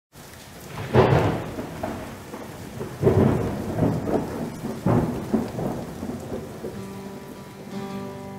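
Thunderstorm recording: three rolls of thunder about two seconds apart, each with a sudden onset and a long fade, over steady rain. A sustained guitar note comes in faintly near the end.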